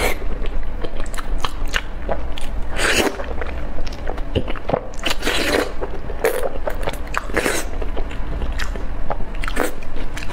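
Close-miked biting and chewing of braised beef tendon, a run of irregular wet clicks and smacks with a few louder bites scattered through.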